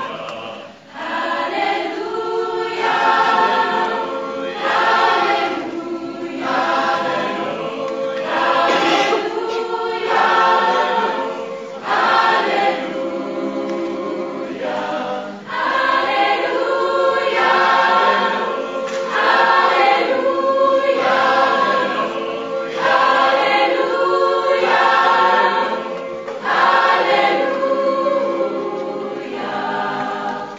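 Mixed choir of teenage boys and girls singing under a conductor, phrase after phrase with short breaks between them, the first about a second in.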